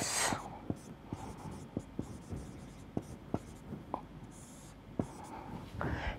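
Marker pen writing on a whiteboard: faint scattered ticks and short scratchy strokes as symbols are drawn.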